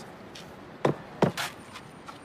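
Two fist punches landing on a padded strike shield held by a partner, two sharp thuds a little under half a second apart.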